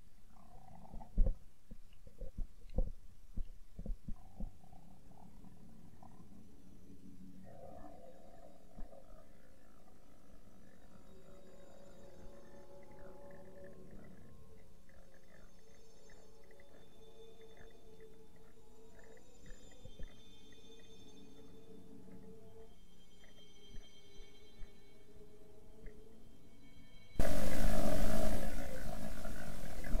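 Underwater sound heard through a camera held beneath a boat's hull. A few sharp knocks come early on, then faint shifting whines and hums. About 27 seconds in, a sudden loud rushing noise starts.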